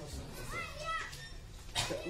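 A child's voice calling out briefly in the background, one short high-pitched call that rises and falls in pitch, over a low hum of schoolroom noise.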